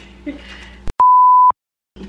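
A censor bleep dubbed over the sound track: one steady, high, pure-tone beep about half a second long, about a second in, with the audio muted to dead silence just before and after it.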